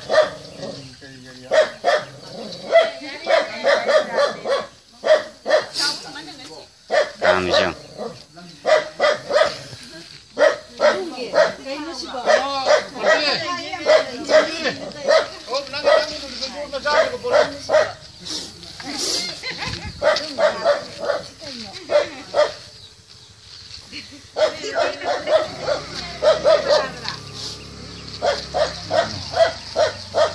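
Many short, sharp animal calls repeated a couple of times a second, mixed with people's voices, with a few brief lulls.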